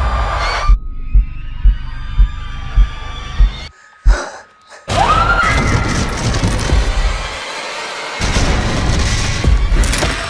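Horror-trailer sound design: six deep, heartbeat-like booms about half a second apart over a steady drone. Near four seconds in it cuts to near silence with a single hit, then a rising tone swells into dense, loud music.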